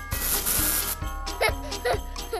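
Cartoon spray-bottle sound effect: a hiss of about a second, over jingling children's background music. A short high cartoon voice follows near the end.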